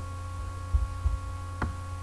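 Steady electrical hum with a thin high whine from the recording chain, broken by a sharp click about one and a half seconds in and a couple of low thumps a little before it.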